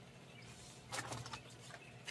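Faint rustling of a bag of earthworm castings being handled and lifted, a short burst about a second in, over quiet outdoor background.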